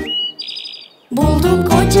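A brief high cartoon chirp sound effect in a gap in the music: a tone rises and holds, then breaks into a quick warble. Bright children's-song music comes back about a second in.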